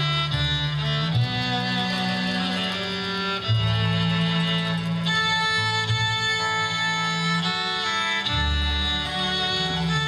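Folk string band playing an instrumental passage: fiddle carrying the melody over acoustic guitar, mandolin, upright bass and bowed cello, with long held bass notes changing every second or two.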